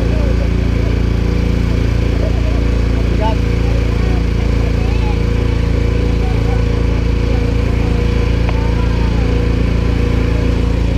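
Small engine of an open multi-row passenger cart running steadily at an even speed while the cart drives along, heard close up from on board.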